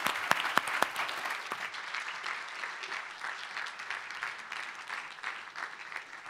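An audience applauding in a large room: dense clapping, loudest in the first second with a few sharp claps standing out, then slowly thinning.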